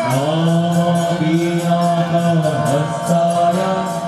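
Devotional mantra chanting with music: a sung voice holding long notes over a quick, steady percussion beat.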